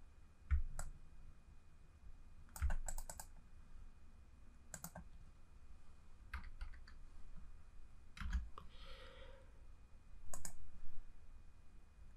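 Computer keyboard keys and mouse clicks, faint and sharp, coming in short scattered clusters as a price value is typed into a chart dialog box.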